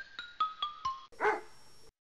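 A short chiming jingle of about five struck notes stepping down in pitch, then a single dog bark just over a second in.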